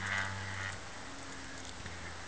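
Quiet outdoor background: a faint steady hum and hiss, with a thin high tone that stops under a second in.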